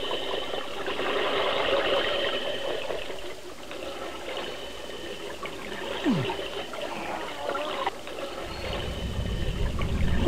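Water running and trickling steadily as a flood sound effect. A short falling tone comes about six seconds in, and a low rumble builds near the end.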